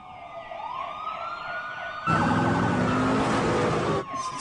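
Emergency vehicle sirens wailing, the pitch rising and falling, as vehicles approach. About halfway through, a louder, fuller layer of siren and vehicle noise cuts in suddenly.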